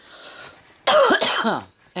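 A person coughs once, loudly, about a second in, the cough lasting under a second.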